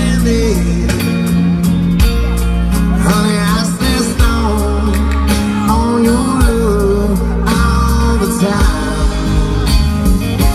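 Live band playing a slow country-soul ballad through a PA: electric guitar, bass and drums, with singing at times.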